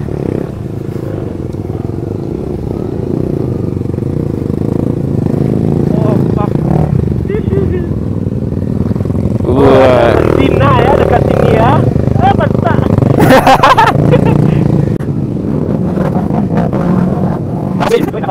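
Motorcycle engines running at low speed as a group rides over a rough, rocky dirt track, the sound growing louder through the first half. Voices shout briefly about ten seconds in and again a few seconds later.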